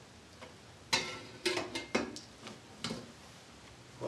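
A string of light, sharp clicks and clinks, about six in two seconds starting about a second in: communion cup trays being handled on the communion table.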